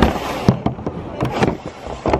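Irregular knocks and clunks as the camera rides the conveyor through an airport security X-ray machine. There is a sharp knock at the start, another about half a second in, and a quick cluster of knocks past the middle.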